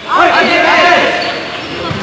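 A basketball team shouting a cheer together in a huddle with their hands stacked, many young voices at once. The shout is loudest in the first second and then tails off into their talk.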